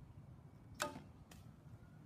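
A youth recurve bow loosing an arrow: the string snaps forward with a sharp click and a short twang about a second in, followed by a fainter click half a second later.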